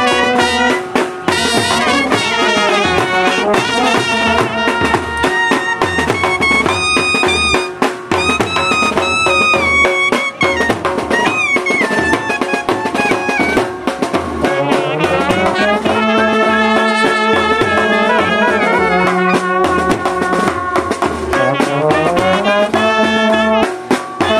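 Indian wedding brass band playing a film-song melody: trumpets and a clarinet carrying the tune over baritone horns, with snare drum and bass drum keeping the beat.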